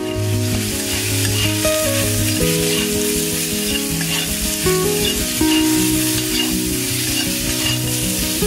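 Food frying and sizzling steadily in hot mustard oil in a pan, easing near the end, over soft background music.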